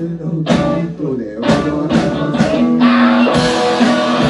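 Live rock band playing loudly: distorted electric guitar over drums with cymbal crashes, with falling sliding notes in the first second and several sharp drum hits.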